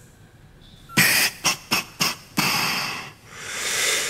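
A man's wordless breathy reaction: a few short puffs of air through the nose about a second in, then two long exhales.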